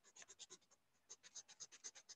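Faint, rapid back-and-forth strokes of a pen on a paper notepad, scribbling out part of a circuit drawing, with a brief pause about halfway through.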